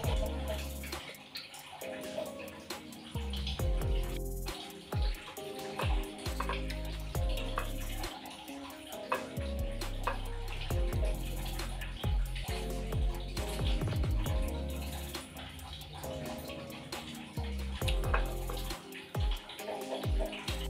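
Background music with held low bass notes changing every second or two, and a few faint clicks over it.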